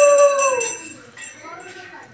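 A conch shell blown in one long steady note that drops in pitch and dies away about half a second in, over the fast ringing of a small puja hand bell that stops just before one second; faint voices follow.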